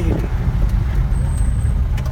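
Steady low rumble of a moving vehicle's engine and road noise, heard from on board while it drives along a hill road.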